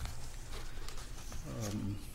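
Low background hum of a meeting room with a few faint clicks, and a short murmured voice near the end.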